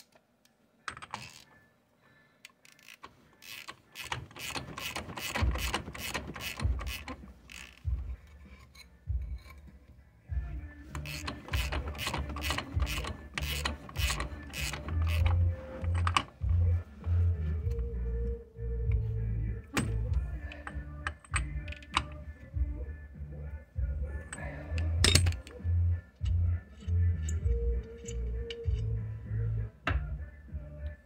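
Socket ratchet clicking in quick runs, working the nut on the end of a Toyota T100's new front axle half shaft, with a few scattered clicks and one sharp metal click later on.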